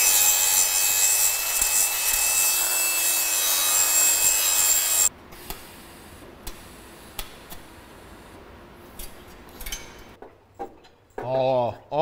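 A power tool runs loud and steady, a harsh grinding or cutting noise with a high whine, for about five seconds and stops abruptly. Quieter scattered clicks and knocks follow.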